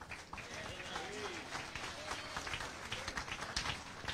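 Congregation applauding with light, scattered clapping, faint voices underneath.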